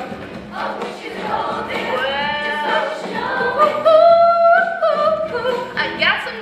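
Girls' choir singing a pop song together, with a long held note in the second half that is the loudest part.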